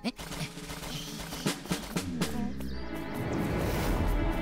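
Cartoon sound effects over background music: a string of short knocks and rustles, then a swelling swoosh near the end as the ankylosaurus swings its tail.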